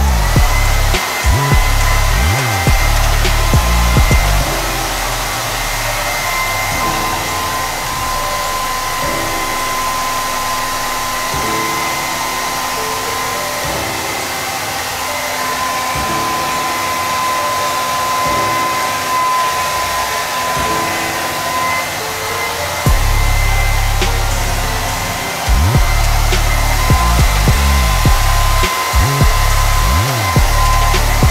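Hand-held hair dryer blowing steadily, with a high motor whine. Under it runs background music whose heavy bass beat is there for the first few seconds, drops away, and returns for the last third.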